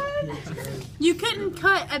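A person's voice making a quick series of short, high-pitched cries that rise and fall, starting about a second in.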